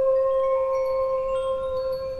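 Soft meditative music: one long held note, with faint chime-like tones sounding above it.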